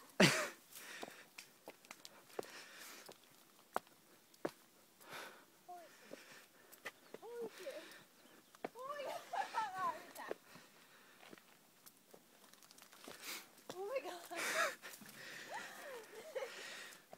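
Faint, indistinct voices in short scattered snatches, with a few sharp clicks between them.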